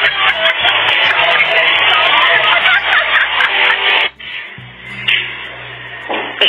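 Background music: a dense, loud mix for about four seconds, then it drops suddenly to a quieter passage with a steady low bass line.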